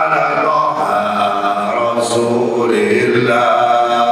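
A man singing a sholawat, an Islamic devotional chant in praise of the Prophet, into a microphone with no words spoken, in long held notes that waver and glide.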